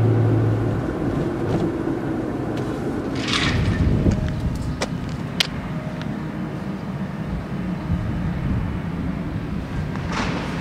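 Engine and road noise inside a moving car. About three seconds in it gives way to a steady diesel engine hum from a compact excavator working at a roadworks, with two sharp clicks or knocks around five seconds in.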